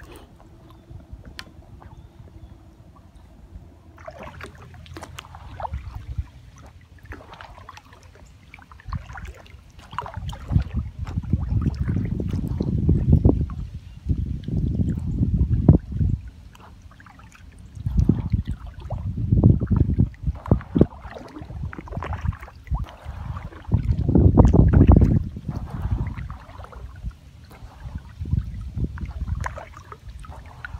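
Paddling an inflatable kayak on a lake: paddle strokes, water splashing and dripping, and water moving around the hull. From about ten seconds in come several long bouts of loud low rumbling.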